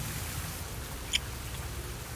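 A kiss: one short lip smack about a second in, over steady outdoor background hiss with a low rumble.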